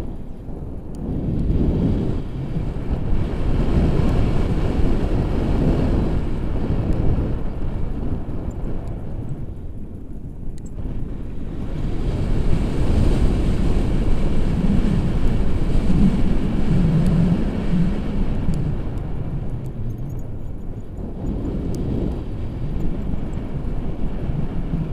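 Wind buffeting an action camera's microphone in a tandem paraglider's airflow: a loud, low rumble that swells and eases in gusts, dipping briefly about a second in, near the middle, and again a few seconds before the end.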